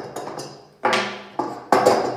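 Three sharp knocks of metal on a wooden tabletop, each ringing briefly, the last the loudest, as the hex key is put down and the beam's metal end couplings are set down on the table.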